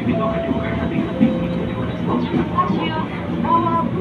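Commuter electric train running slowly past a station platform: a steady low hum and track rumble, with a few short, steady high tones over it.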